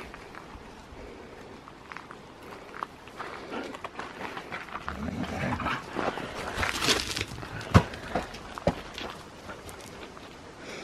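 Dogs moving about on gravel, with scattered crunches and a few sharp knocks in the second half, the loudest late on. A short, low dog sound comes about halfway through.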